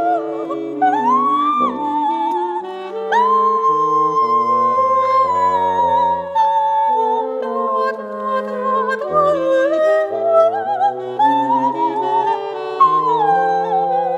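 Coloratura soprano singing a wordless, jazz-inflected vocalise with vibrato, long held high notes and quick runs, accompanied by alto saxophone and bassoon in counterpoint.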